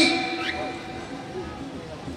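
A pause in a man's amplified speech: the last word rings on faintly through the loudspeakers and dies away within about a second, leaving low background noise.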